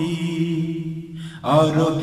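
A male voice singing a Bengali Islamic gojol: a held note tails off over a steady low drone, and the next sung phrase comes in about one and a half seconds in.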